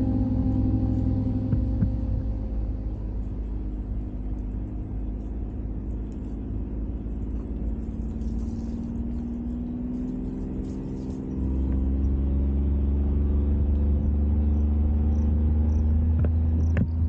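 Vehicle engine and drivetrain running over a dirt track, picked up by a hood-mounted camera: a steady low rumble with an engine tone that slowly rises in pitch, getting louder about eleven seconds in.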